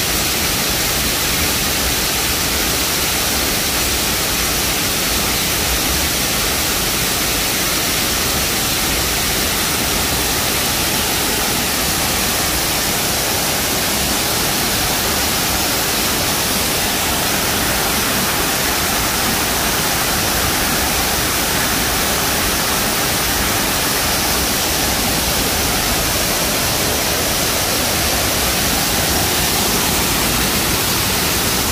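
Man-made waterfall: water pouring over the edge of a concrete wall and splashing onto rocks in a pool below, a steady, loud rush of falling water.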